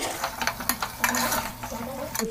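Metal spatula stirring mutton pieces and spice masala in an aluminium pot, with short scrapes and clicks against the pot, over a low sizzle of the meat frying in oil.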